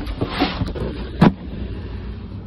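A cardboard box packed with bagged chips is handled with rustling, then set down on asphalt with a single sharp thump a little past halfway.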